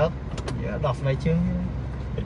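Steady low rumble of a car's engine and road noise heard inside the cabin while driving, with a few brief snatches of speech.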